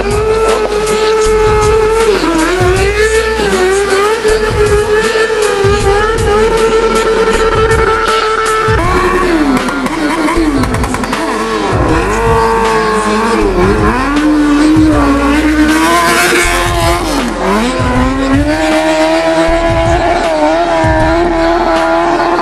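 Motorcycle engine held at high revs during a burnout. Its pitch holds steady for several seconds, then dips and climbs back several times past the middle as the throttle is eased and reopened, with a fast stutter running under it.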